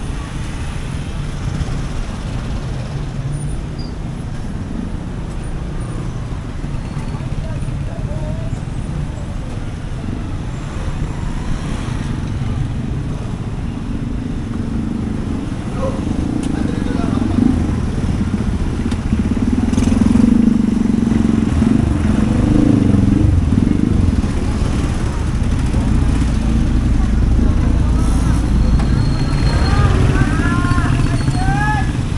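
Busy street traffic: motorcycle-sidecar tricycles and cars running and passing close by. The engine rumble grows louder about halfway through.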